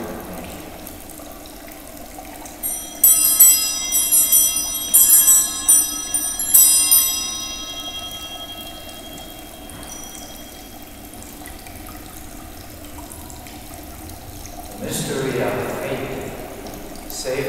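Altar bells (a cluster of small Sanctus bells) shaken in a quick series of rings for about four seconds, then ringing away. This is the bell rung at the elevation of the chalice during the consecration.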